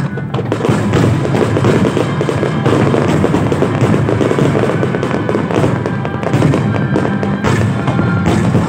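Fireworks bursting and crackling in a dense run of sharp bangs, over a live symphony orchestra playing.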